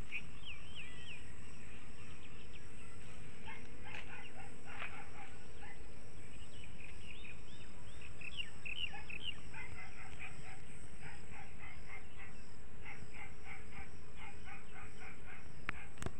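Small birds chirping in many short, quickly repeated calls with a few sliding notes, denser in the second half, over a steady low rumble of background noise.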